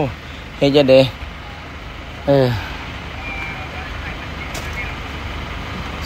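Steady low hum of a passenger van's engine idling.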